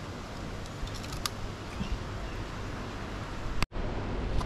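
Quiet open-air ambience: a steady faint hiss with a light click about a second in. Near the end comes a sharp click, then a brief drop to silence where the audio is cut.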